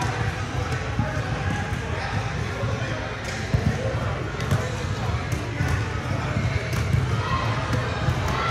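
Basketballs bouncing on a hardwood gym floor, irregular thuds echoing in a large gym hall.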